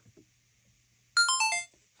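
DJI Action 4 action camera's stop-recording chime: a faint button click, then about a second in a quick falling run of four electronic beeps as recording stops.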